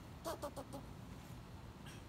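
Squirrel barking and chirping: a quick run of four short calls about a quarter of a second in, then one more near the end.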